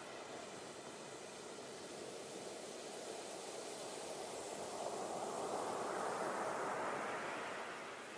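Rushing water of a waterfall, as a sound effect. A steady noise that swells louder and brighter past the middle, then eases off near the end.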